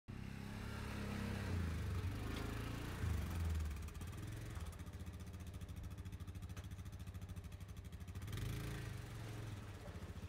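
ATV engine running faintly at low speed, its note swelling and dipping over the first few seconds, then settling into a steady, even pulse before picking up again near the end.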